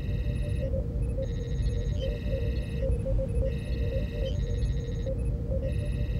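Sci-fi starship ambience: a steady low hum with a running pattern of soft computer blips, overlaid by four bursts of high, warbling electronic chirps, each lasting under a second to over a second.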